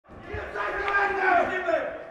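Several people shouting at once, their raised voices overlapping. The sound fades in at the start and dies away towards the end.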